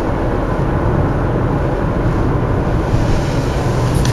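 Car driving, heard from inside the cabin: a steady low rumble of engine and tyre noise on the road.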